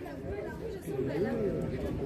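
Indistinct background chatter: several people talking at a distance, with no single clear voice.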